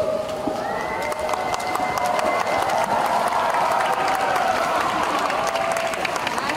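Many voices cheering and whooping in overlapping rising and falling calls, with clapping and the splashes of a line of divers jumping into the pool together.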